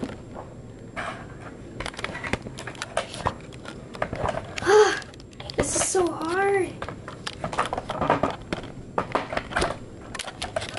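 Handling noise from a phone camera being repositioned and fiddled with: an irregular run of clicks, taps and knocks. A short wordless vocal sound, like a hum or groan, comes about five seconds in, with a second one right after.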